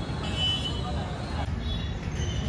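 Outdoor background of low traffic rumble with indistinct voices, and a short high-pitched tone about half a second in.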